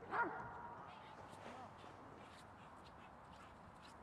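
A dog gives one loud, short bark about a quarter second in, then whines faintly.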